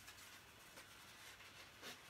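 Near silence: faint rustling of card stock being folded and shifted by hand.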